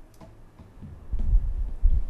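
A low rumble with heavy thuds starting about a second in, and a sharper thump near the end.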